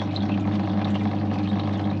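Nutrient water running through an NFT hydroponic channel around melon roots, with a steady low hum under it.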